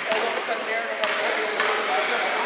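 Basketball bouncing on a gym court floor: a few sharp bounces, one right at the start and two more in the second half, over background voices.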